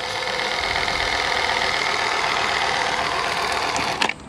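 Ryobi One+ 18V power caulk gun (P310G) running: its electric motor drives the plunger rod steadily to push caulk out of the tube, with an even, unchanging hum that cuts off right at the end.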